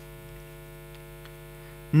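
A steady electrical hum with many evenly spaced overtones, with no speech over it.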